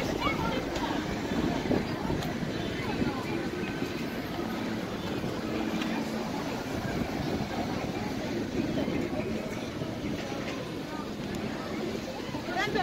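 Street ambience: the steady noise of road traffic with indistinct voices of people walking by.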